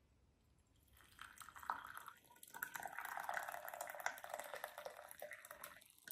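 Herbal tea poured from a glass teapot into a ceramic cup: a steady trickle of liquid that starts about a second in and stops just before the end.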